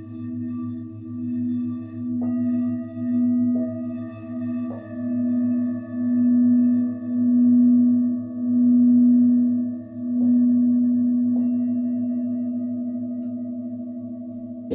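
A large frosted quartz crystal singing bowl rubbed around its rim with a mallet, giving one steady low hum that swells and fades about once a second. A few light strikes add higher ringing tones, and about ten seconds in the rubbing stops and the bowl rings on, slowly fading.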